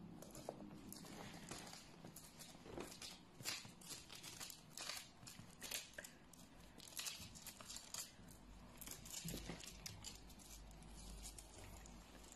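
Faint, irregular rustling and scratching of fabric as a pet ferret tugs at a piece of spandex and burrows under it, in short uneven bursts.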